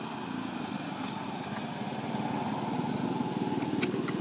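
A small engine running steadily with a rapid even pulse, growing slightly louder, with a couple of sharp clicks near the end.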